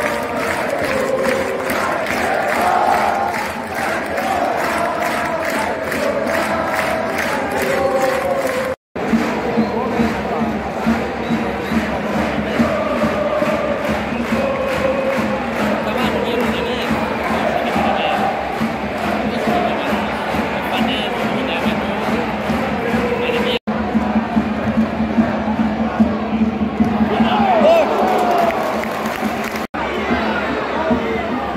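Football crowd in a stadium chanting and singing together. The sound is spliced from several clips, with abrupt cuts about 9 seconds in, about 24 seconds in and just before the end.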